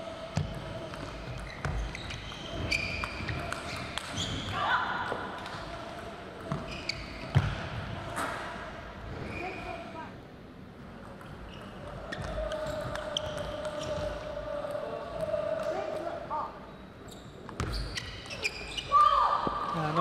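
Table tennis ball clicking off rackets and the table in fast doubles rallies, with several points played.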